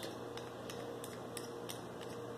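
Faint light ticks of a small metal rifle bag-rider unit being handled, its mount shifting in the rider body, a handful of separate clicks over a faint steady hum.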